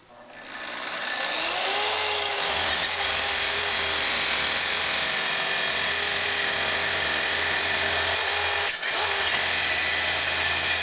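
Kreg plunge track saw switched on, its motor spinning up over about a second and a half to a steady whine, then running steadily as it cuts along a wood-and-epoxy slab. There is a brief dip in the sound near the end.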